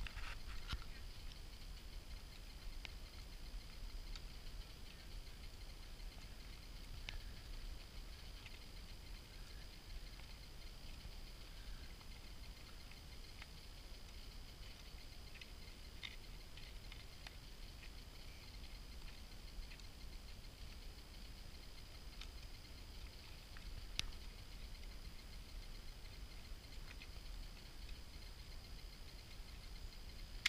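Faint, muffled sound of riding a mule along a dirt trail: a steady low rumble with a few soft, scattered clicks.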